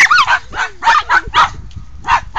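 A dog barking in a quick run of about six short, high-pitched barks while it wrestles with another dog.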